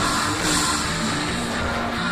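A live rock band playing loud, steady music with a moving bass line, drums and cymbals, heard from among the audience in a hall.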